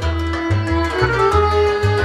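Romanian lăutărească taraf music, all acoustic: a violin carries the melody over accordion, cimbalom (țambal) and double bass, and the bass notes mark a steady beat.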